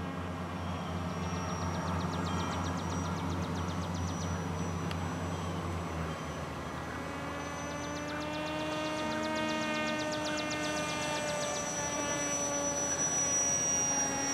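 Electric motor and propeller of a radio-controlled AirModel Sword flying wing, whining as the plane flies overhead. A higher whine builds from about seven seconds in and creeps slightly up in pitch. For the first six seconds it sits over a low steady hum.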